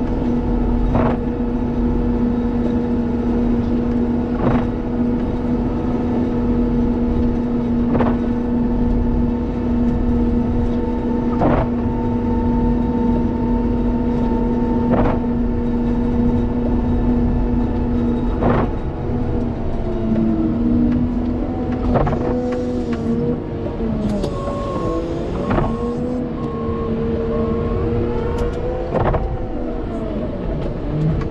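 Cat 930M wheel loader's engine running under load while it pushes snow with a Metal Pless pusher, heard from inside the cab: a steady drone for most of the first two thirds, then the pitch wavers, dips and climbs again as the machine works the pile. A sharp click repeats about every three and a half seconds.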